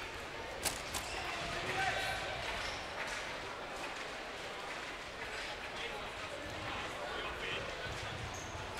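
Crowd murmur and distant voices echoing in a sports hall during an indoor football match, with a sharp knock of the ball about two thirds of a second in and another around three seconds.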